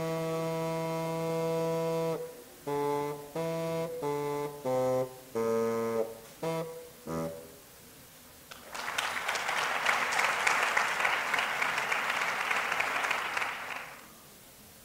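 Bassoon playing a long held low note, then a string of short separate notes that ends about seven seconds in. About a second later, audience applause begins and runs for around five seconds.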